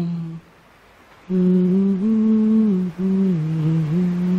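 A man humming a tune with his mouth closed: a short note that stops just after the start, a pause of about a second, then a longer phrase of held notes that step up and then down, broken once by a brief gap near three seconds.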